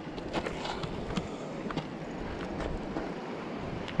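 Steady rushing of a fast, swollen river, with a few faint clicks scattered through it.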